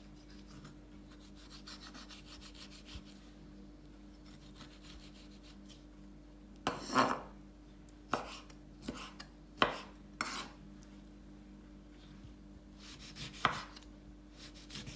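Kitchen knife cutting orange on a wooden cutting board: faint scraping strokes through the fruit, then from about halfway about six sharp knocks of the blade on the board.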